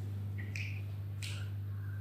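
A steady low electrical hum, with a couple of faint, short clicks.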